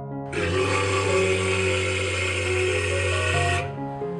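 A walrus giving one long, harsh bellow lasting a little over three seconds, over soft piano background music.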